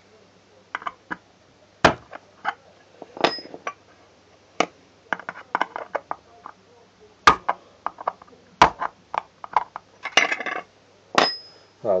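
Thin metal jar lid clicking and clinking against a steel flathead screwdriver as its pierced centre hole is worked and handled. The clicks and knocks come irregularly, a couple of them ringing briefly with a high metallic ping.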